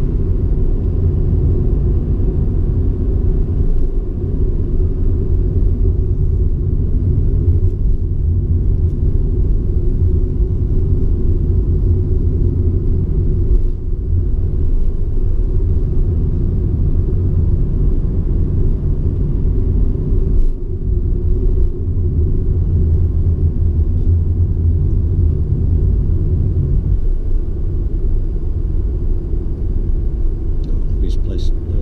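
Steady low engine and road rumble heard inside a moving car's cabin, dipping briefly a few times.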